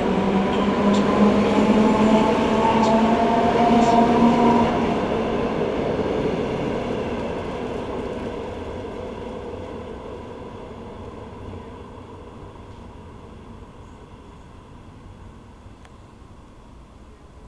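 An NS Mat '64 'Plan T' electric multiple unit pulls away from a station. Its electric drive gives a steady hum and whine that rise slightly in pitch over the first four seconds, with a few clicks. The sound then fades steadily as the train draws away.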